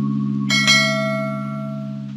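A bright bell-chime sound effect, the ring of a subscribe-button notification bell, strikes about half a second in and rings away. Under it a held low chord of background music fades out.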